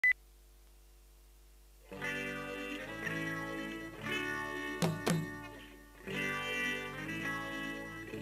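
A short high beep at the very start, then a low steady hum until a live band comes in about two seconds in: sustained electric guitar chords over bass, with two sharp drum hits in quick succession just past the middle.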